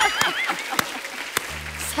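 Studio audience applause with a short music sting over it: a wavering high note that stops about half a second in, then a low steady bass note that comes in near the end.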